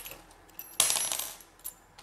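Small metal hand tools from an RC kit clinking against each other as they are picked up and handled, with one brighter metallic clatter about a second in.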